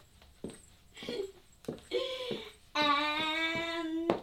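A woman's wordless voice: a short vocal sound about halfway through, then one long held note near the end, with a few sharp clicks under it.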